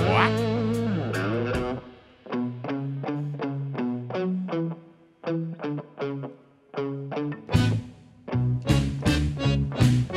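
Telecaster-style electric guitar picking a choppy single-note riff on its own after the band's held chord cuts off about a second and a half in. Bass and drums come back in with it near the end.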